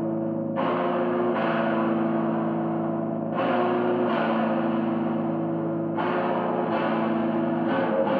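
Amplified electric guitar played through effects pedals in a slow doom style: long, ringing, droning chords, each held for one to three seconds before the next is struck.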